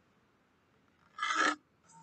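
A pencil scratching across drawing paper in one short rasp, a little over a second in, after near silence.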